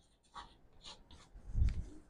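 Chalk scratching on a chalkboard in short strokes as letters are written, with a low thump near the end.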